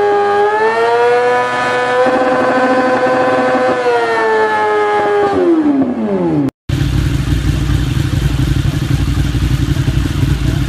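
Sportbike engine held at high revs during a rear-tyre burnout: a steady high-pitched engine note that climbs a little about a second in, holds, then falls away as the revs drop about five seconds in. After an abrupt cut, a low rumbling engine noise takes over.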